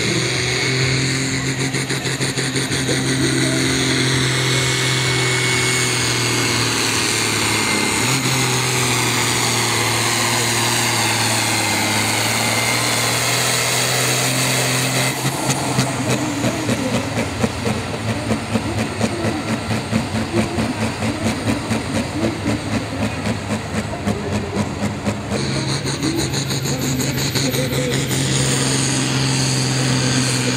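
Modified Ford pulling tractor's turbocharged diesel engine running hard under full load against the sled, steady with a thin high whistle over it. About halfway through it drops to a lumpy, pulsing idle for about ten seconds, then full-load running is back near the end.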